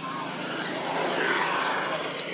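Water splashing and pouring as a hand scoops shallow water over a baby macaque being bathed: a steady rushing, sloshing noise with no clear calls.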